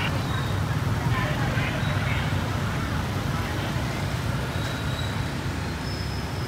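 Motorcycles and pickup trucks in a slow convoy passing along a street, a steady low engine and traffic rumble. Scattered voices of onlookers over it.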